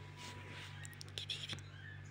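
Soft whispering, unvoiced and breathy, with a few light clicks about a second in.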